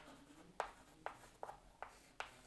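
Chalk writing on a chalkboard: about five short, sharp taps and strokes as letters are chalked on the board.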